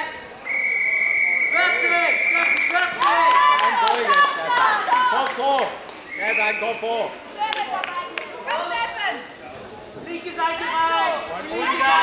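Referee's whistle blown in one long blast of about two seconds, starting about half a second in, stopping the ground wrestling in a Greco-Roman bout.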